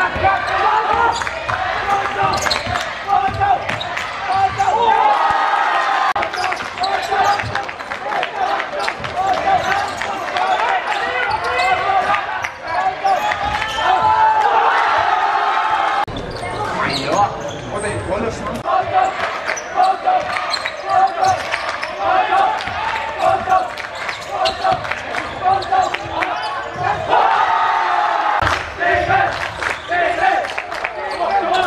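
Basketball being dribbled on a wooden gym floor during live play, with repeated bounces, amid the talking and shouting of players and onlookers. The audio breaks off and resumes about halfway through.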